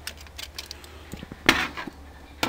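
A foil-lined baking pan being handled: faint crinkling and ticking of aluminium foil, with one sharp knock about one and a half seconds in.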